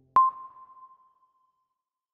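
A single electronic ping sound effect: a sharp click followed by a high ringing tone that dies away over about a second and a half, the sting of an animated logo.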